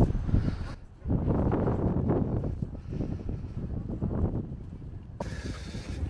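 Strong wind buffeting the microphone, a low, uneven rumble that stops abruptly near the end.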